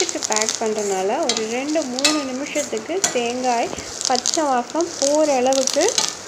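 A spatula stirring and scraping frying curry leaves, onion and dal around a stainless steel pan. The scraping draws a wavering, rising and falling squeal from the pan with each stroke, over a light sizzle.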